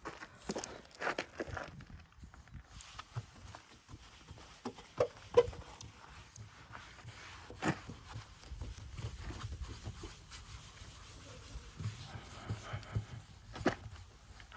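A towel rubbing over a car's painted door panel as dried polish is wiped off, a soft irregular rubbing with scattered clicks and knocks; a sharp knock about five seconds in is the loudest.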